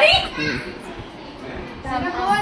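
Family members talking, with a toddler's voice among them. A phrase trails off just after the start, it goes quieter through the middle, and talking picks up again near the end.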